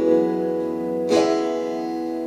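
Acoustic guitar strumming chords during an instrumental passage of a song. A chord rings on and fades, and a new chord is struck about a second in.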